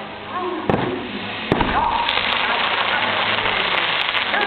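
Fireworks bursting: two sharp bangs under a second apart, then a dense crackling haze of smaller bursts, with a voice heard faintly over it.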